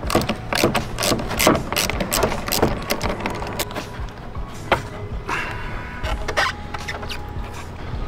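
Ratchet wrench clicking in quick irregular strokes as a car battery's terminal clamp nut is loosened, with metal clinks as the clamp is worked off the post, under background music.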